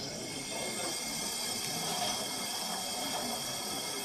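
Steady steam hiss from the sound module of a 1:32 gauge 1 brass model of a Prussian T 9.3 (class 91.3-18) tank locomotive standing still.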